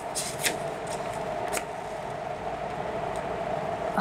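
A few short rustles of handled paper, one near the start and another about a second and a half in, over a steady hum of background noise.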